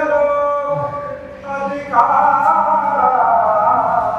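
Actors' voices singing long held notes in rehearsal: one voice holds a note, then a group of voices joins in higher about two seconds in.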